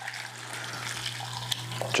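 Hot pickling liquid (vinegar, sugar and water) poured from a small saucepan into a metal bowl of thinly sliced broccoli stems, a steady pour.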